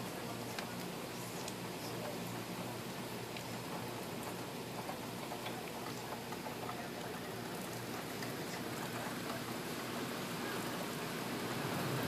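Steady rain falling with wind blowing through trees, a few drops tapping close by; it grows a little louder near the end.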